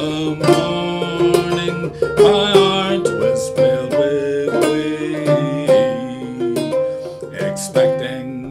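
Goldtone open-back banjo played clawhammer style in a lilting 6/8. It has nylgut strings and a tall bridge over a natural John Balch skin head and a Dobson tone ring, and is tuned aDADE. A steady run of plucked notes and brushed strums, with no break.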